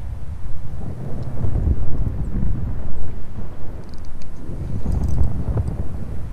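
Wind buffeting the microphone: a loud, gusty low rumble that swells and drops.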